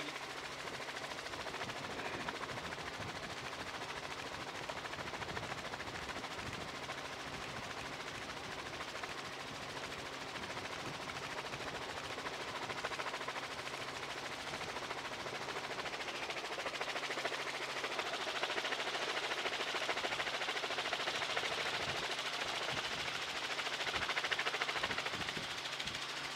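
Helicopter noise heard from inside the cabin: the rotor blades beating rapidly and steadily over a constant low hum from the engine and gearbox, growing a little louder in the second half.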